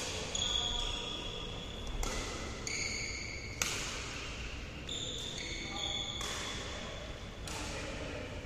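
Badminton rackets striking shuttlecocks in a large hall, sharp smacks every second or two, mixed with high squeaks of shoes on the court floor.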